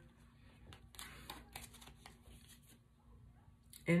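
Tarot cards being handled and a card drawn from the deck: faint papery rustles and light clicks of cards sliding against each other, most of them in the first couple of seconds.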